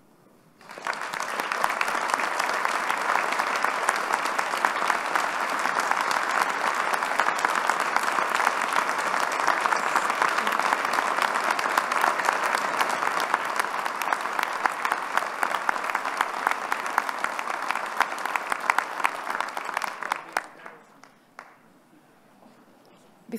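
A large audience applauding, starting about a second in and holding steady before thinning to scattered claps and dying away near the end.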